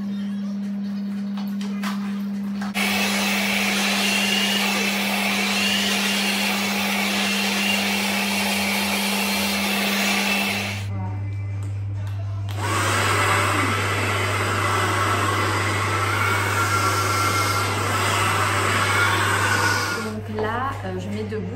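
Hand-held hair dryer blowing steadily during a blow-dry, starting about three seconds in, breaking off for a couple of seconds around eleven seconds, then running again. A steady low hum runs underneath.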